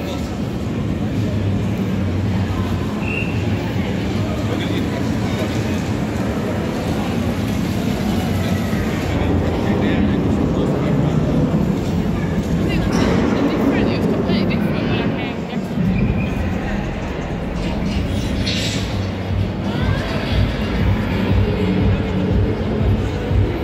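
A steady low rumble with indistinct voices murmuring in the background.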